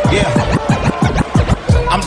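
Hip hop music between rap verses: a beat of rapid bass drum hits with turntable scratching over it.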